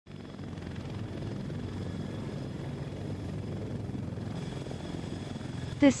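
CH-53K King Stallion heavy-lift helicopter running steadily, with the low beat of its rotors and a faint high turbine whine from its three turboshaft engines.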